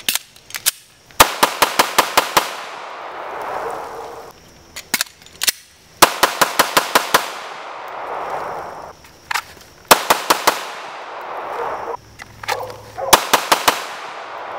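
A 9mm compact pistol fired in four quick strings of rapid shots, about five to eight shots per string, with a long echo trailing off after each string.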